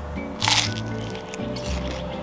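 Background music, with one crunchy bite into a slice of toast about half a second in.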